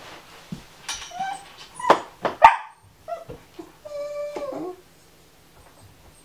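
A dog giving a few short yips and whimpers, loudest about two and a half seconds in, with a brief steady whine around four seconds in.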